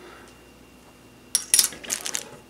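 Small plastic utensils and a plastic tray set down on a wooden table: a quick run of light clicks and clatter starting about a second and a half in.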